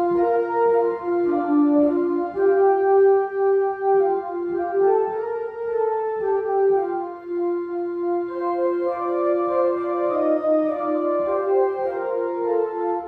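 Organ playing a hymn tune in held chords, each note sustained without fading before moving to the next: the melody of the closing hymn.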